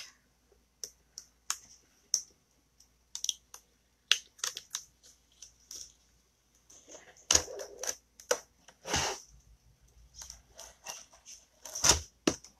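Scattered light clicks and taps from hands handling chalk-paste transfer materials and a framed board on a cutting mat, with brief rustling scrapes about seven and nine seconds in.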